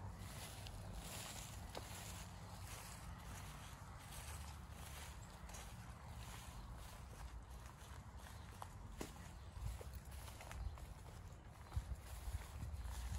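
Footsteps through tall grass and weeds at a steady walking pace, about two steps a second, with a few sharper snaps of twigs or brush near the end.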